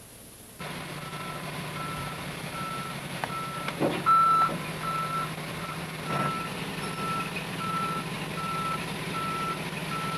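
A backup alarm beeps steadily, a little faster than once a second, over the low, steady running of a truck engine; it starts about half a second in. A few brief knocks come near the middle.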